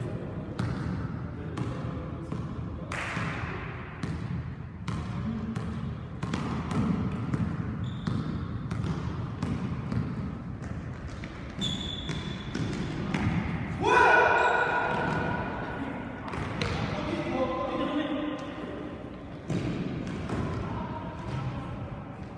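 Basketball bouncing on a gymnasium floor during play, irregular thuds as it is dribbled and passed, with brief shoe squeaks and players' voices ringing in the large hall. The loudest moment is a sharp pitched squeal or shout about fourteen seconds in.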